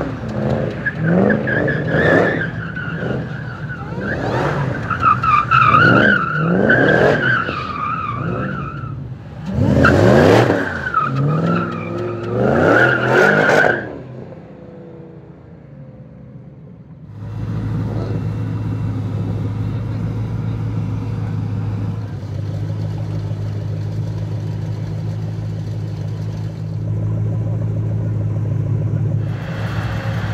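Supercharged 5.4-litre V8 of a 2011 Shelby GT500 Super Snake revving hard and accelerating away, in a run of rising surges with a high steady whine over them, then fading out about 14 seconds in. After a few quieter seconds, an engine idles steadily for the rest of the time.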